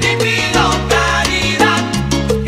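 Salsa music in an instrumental passage with no singing: a steady bass line under regular percussion and pitched melodic instruments.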